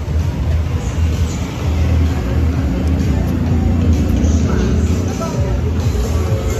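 Street ambience dominated by a steady low rumble from a car's engine close by, with people's voices and music in the background.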